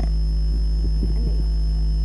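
Steady low electrical mains hum on the broadcast audio, unbroken and unchanging, with faint voice traces in the background.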